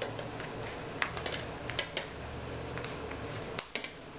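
Hands working a sewing needle and waxed linen thread through a stab-bound book's paper spine: soft rustling and small clicks as the needle is forced through a hole already tight with thread. Two sharp clicks near the end, as the needle snaps.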